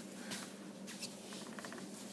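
Faint rustling and light scratching of a crocheted yarn piece and its loose strands being handled and spread out, with a short run of quick soft ticks a little past the middle.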